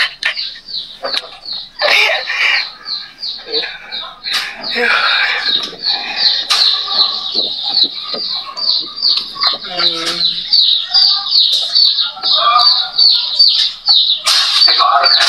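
A bird chirping over and over, about three short high chirps a second, with voices in the background.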